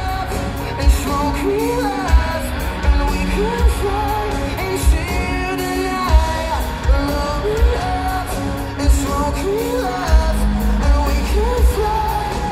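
Live pop-punk band playing loud through an arena PA, recorded from the crowd: drum kit with a steady kick beat about once a second, guitar and bass, and a sung vocal line over the top.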